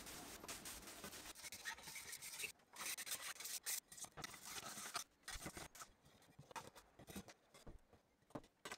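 Faint dry rubbing and scraping: a hand rubbing across a wooden tabletop, then a small plastic scraper working at white slabs, knocking crumbs loose. The scratching is dense for about the first five seconds, then thins to scattered small scrapes and clicks.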